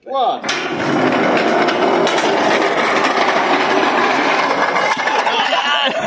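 A wheeled rocker-cover racer rolling down a long steel-channel ramp: a steady rattling rumble of metal on metal that starts about half a second in and runs for about five seconds before stopping near the end.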